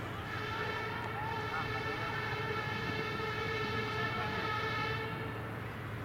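A distant horn sounds steadily for about four and a half seconds, fading in and out, over faint background voices.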